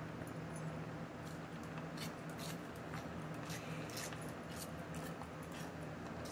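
A dog licking water off bare skin and a spray bottle, a run of short wet licks roughly twice a second, over a steady low hum.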